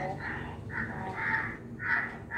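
A crow cawing repeatedly, about five caws in two seconds.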